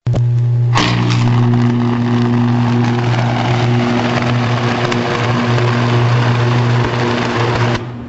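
Electric arc drawn across a 500 kV disconnect switch opened under load: a loud, steady buzzing hum with dense crackling, starting abruptly, with a sharp crack about a second in. It cuts off suddenly near the end as the arc breaks. The arc forms because a disconnector, not a circuit breaker, was used to open a loaded line.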